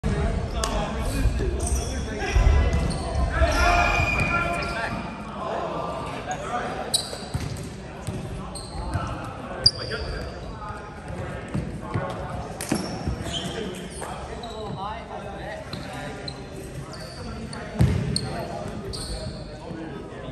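Players' voices echoing in a large sports hall, with sneakers squeaking on the wooden court and a few sharp thuds of the volleyball, the loudest about ten seconds in.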